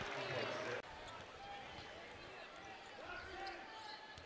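Faint arena sound from a basketball court: a ball dribbling on the hardwood amid distant voices. The level drops a little under a second in.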